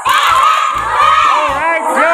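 A group of children shouting and cheering together, the voices breaking out all at once.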